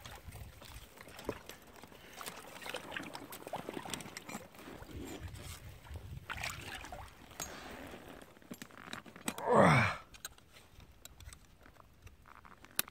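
Water sloshing and trickling as hands work a caught beaver and a 330 body-grip trap in shallow water, with scattered light clicks. About nine and a half seconds in comes a short vocal grunt, the loudest sound.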